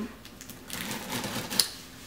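Box cutter slicing through packing tape and cardboard on a shipping box: a run of small scratchy clicks with a sharp click about a second and a half in.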